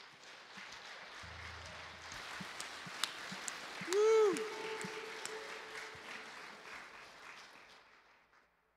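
Congregation applauding after a song, the clapping building and then thinning out toward the end. About halfway through, a single voice calls out briefly over the applause.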